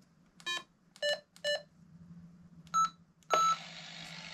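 Handheld VHF amateur radio transceiver's keypad beeping five times in short tones of varying pitch as a frequency is keyed in. After the last, longer beep near the end, steady radio static hiss comes on and keeps going.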